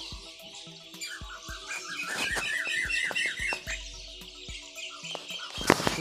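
Background music with held steady tones. A quick run of bird-like falling chirps comes from about one to nearly four seconds in, and a sharp click comes near the end.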